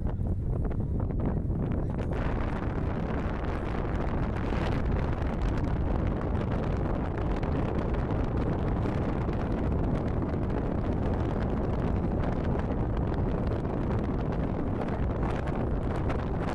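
Wind blowing hard across the microphone on an exposed mountain top: a steady, loud, low rumbling buffet of wind noise.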